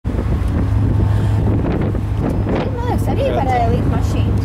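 Wind buffeting the microphone on a ferry's open deck, a steady rushing noise over a constant low rumble. A woman's voice comes in briefly in the second half.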